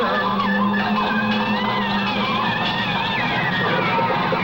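Electronic music: a low held tone under high, wavering tones that slide up and down.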